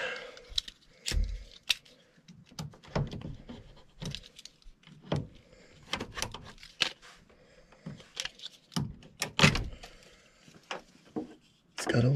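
Irregular clicks, scrapes and knocks of hands working a stuck cap on an air handler's white PVC condensate drain tee.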